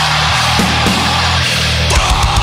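Deathcore song with heavily distorted guitars and bass holding low, sustained notes. The drums thin to a few scattered hits, and quick, dense drumming comes back right at the end.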